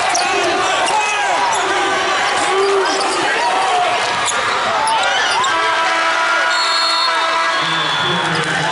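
Basketball dribbling and sneakers squeaking on a hardwood court, with crowd voices in a large arena. Near the end a steady horn sounds for about two seconds: the end-of-quarter buzzer.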